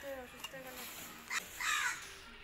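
A crow cawing twice in the second half, a short harsh call and then a longer one, the longer being the loudest sound.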